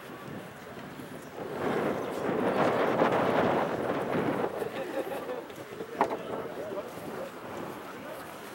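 Indistinct far-off voices and wind across an open playing field, swelling for a few seconds in the first half, with a single sharp knock about six seconds in.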